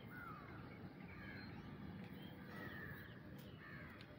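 Faint bird calls, a handful of short calls spread through, over a low steady background rumble.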